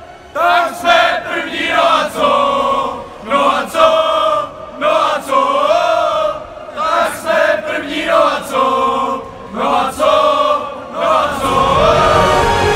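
A group of young men chanting together in unison, loud sung phrases broken by short pauses. Music comes in near the end.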